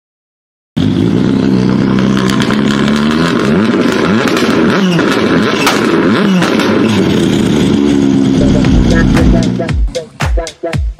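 Engine revving sound effects with rising and falling glides, layered with music, starting after a moment of silence. Deep low pulses come near the end before the sound drops away.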